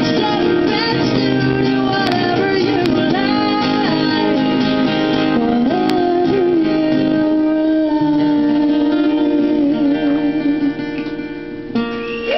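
Two acoustic guitars with a woman singing, the song winding down to long held notes that fade near the end. Right at the very end a sudden burst of crowd noise starts.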